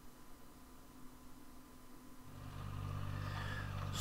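Quiet at first, then a compact tracked loader's engine running steadily, growing louder from about halfway in.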